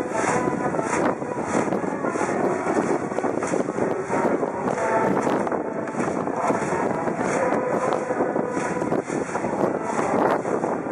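A massed school cheering section chanting and singing a baseball cheer song together over a brass band, with a regular beat.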